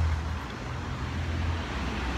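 City street traffic: a steady low engine rumble from nearby cars and buses under a general roadway hum.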